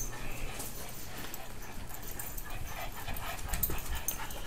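Small Chihuahua-mix dog sniffing and whining softly right up against the microphone.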